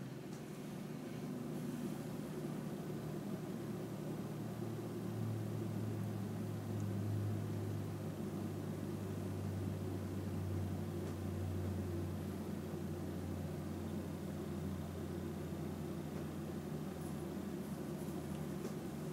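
Room tone: a steady low hum with a faint hiss, growing slightly louder for several seconds in the middle.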